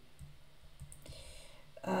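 Faint, scattered clicks and light scratching of a pen stylus on a graphics tablet as symbols are handwritten.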